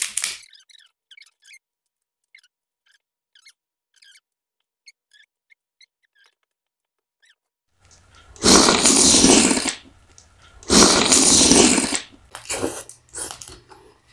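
Close-miked eating sounds of lobster tail eaten by hand. First come faint wet clicks and smacks, then two loud slurps of about a second each a little past the middle, then more smacking chewing near the end.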